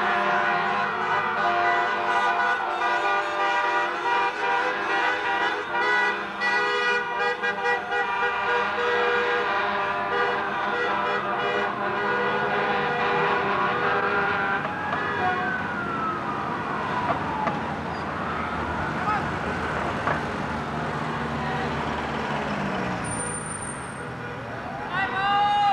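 Fire engine siren wailing in slow rising-and-falling sweeps about every five seconds, under steady blaring vehicle horns. The horns die away about two-thirds of the way through, while the siren carries on more faintly.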